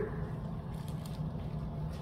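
Steady low room hum between spoken phrases, with a few faint soft rustles a little under a second in.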